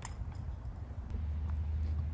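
Faint outdoor background: a steady low rumble with light hiss and a few faint ticks.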